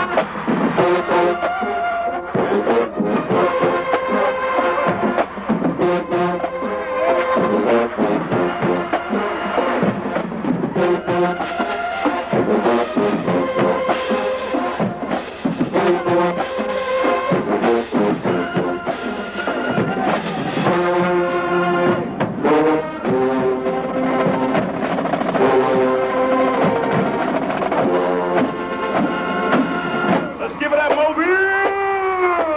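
Marching band playing: brass sections holding and moving between loud chords over a drumline's steady, rapid drum strokes.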